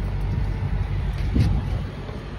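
Idling engine, a steady low rumble, with one short knock about one and a half seconds in.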